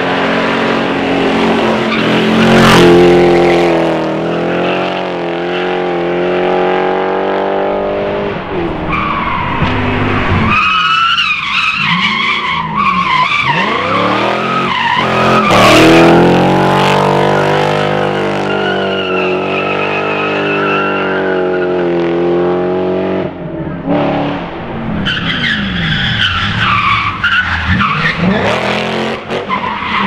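BMW E36 cars drifting: the engine revs up and down hard while the rear tyres squeal and smoke through the corner. Two sharp cracks stand out as the loudest moments, about three seconds in and again about sixteen seconds in.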